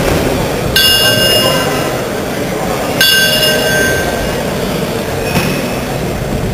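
A metal bell struck twice, about two seconds apart, each ring high and fading over a second or two, over the steady murmur of a sports hall.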